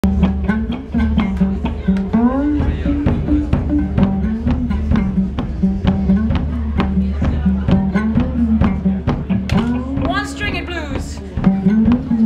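Improvised blues on a cigar box guitar with electric guitar: a steady pulse of picked notes over a repeated low note, with sliding notes rising about two seconds in and again near the end.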